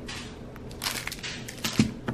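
Grocery packaging being handled, crinkling and rustling in a few short bursts with some sharp clicks, loudest about a second in and again near the end.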